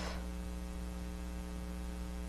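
Steady electrical mains hum with a row of evenly spaced overtones, holding at one level throughout.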